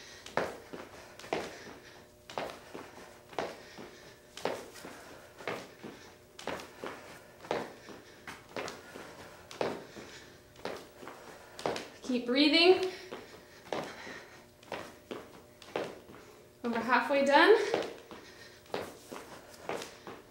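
Sneakers landing on a studio floor during side-to-side lateral jumps: a steady run of short thuds, about one a second, with lighter steps between. A woman's voice breaks in briefly twice, about twelve seconds in and again near the end.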